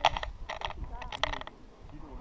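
Indistinct background voices mixed with several sharp clicks or knocks and a low rumble. The loudest click comes right at the start.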